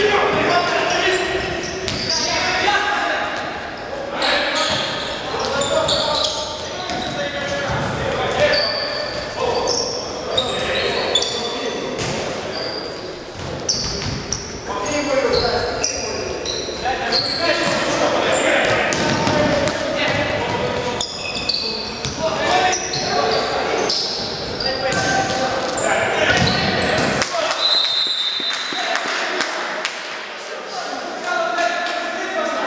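A futsal ball being kicked and bouncing on a wooden gym floor, with players shouting, all echoing in a large sports hall.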